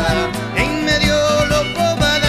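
Live Chaco folk band playing an instrumental passage: a sustained melody over strummed guitars and a steady drum beat.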